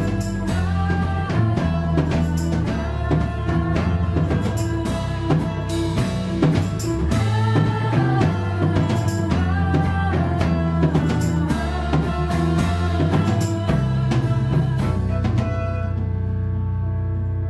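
Live band playing an instrumental passage: a drum kit keeping a steady beat under bowed violin, electric guitar, keyboard and a low bass line. The drums drop out right at the end.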